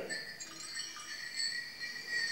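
Small bells sewn on a fool's costume, on the hat, wrist cuffs and ankles, jingling faintly as the wearer moves and lifts his arms.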